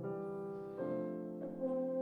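Euphonium with piano accompaniment playing a slow lullaby softly. The euphonium holds sustained notes, moving to new ones just under a second in and again near the end.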